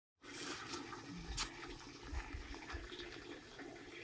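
Faint outdoor background noise with irregular low rumbling bumps on the microphone and a sharp click about a second and a half in.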